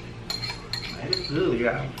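Metal spoon clinking against a small glass bowl, three light clinks with a short ring, as soup is scooped out. A hummed "mm" of appreciation follows in the second half and is the loudest sound.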